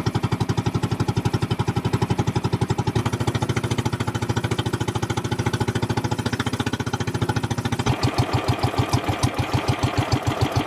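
A small boat engine running at a steady, rapid chug. About eight seconds in the sound changes to heavier, more distinct low beats.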